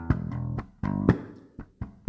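Electric bass played live in a rhythmic, funky line: short plucked notes punctuated by sharp percussive hits.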